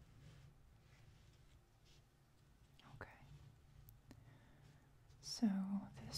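A few faint light taps and rustles from a hand on a fanned-out deck of tarot cards, then near the end a soft, low voice.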